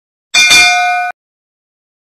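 Bell ding sound effect of a subscribe-and-bell end-screen animation. It is a short, loud metallic ring with several clear tones that starts about a third of a second in and is cut off abruptly about a second in.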